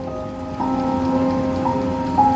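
Soft background music: held, pad-like chords that change notes twice, over a steady hiss.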